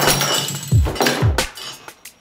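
Metal cocktail tins and bar tools knocked over, clattering and rattling on a wooden bar counter, the clatter dying away over the first second or so. A background music beat runs underneath.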